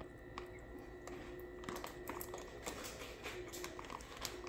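Close-up chewing of a mouthful of chili and Fritos corn chips: irregular small crunches and clicks.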